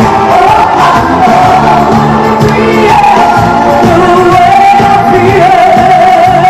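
Live amplified pop music: a woman sings the lead vocal into a handheld microphone, holding long notes over a full band, heard loud and steady through the PA in a large hall.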